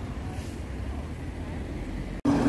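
Steady low rumble and hiss of city street traffic, with no distinct single event.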